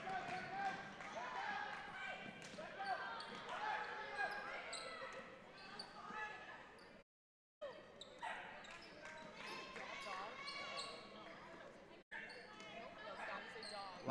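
Gymnasium sound during a basketball game: faint voices of players and spectators calling out, with a basketball being dribbled on the hardwood floor. The sound cuts out completely for about half a second around seven seconds in.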